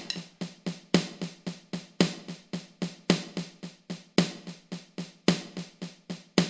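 Alesis electronic drum kit played with sticks: a paradiddle fill moving between snare and toms, an even run of strokes about four to five a second with a louder accent about once a second.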